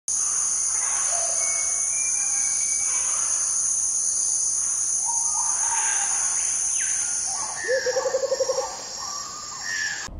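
Nature ambience of insects and birds: a steady high insect drone with scattered bird chirps and calls. The drone stops about three-quarters through, and near the end there is a short call of rapid, even pulses.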